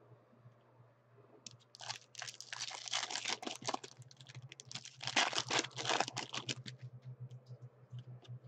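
Foil wrapper of a Panini Select basketball card pack crinkling and crackling as it is torn open and the cards are pulled out, in two bursts about two and five seconds in. A low steady hum runs underneath.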